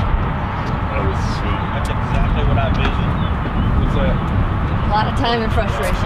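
Background chatter of people talking, with a steady low rumble underneath. The voices grow busier near the end.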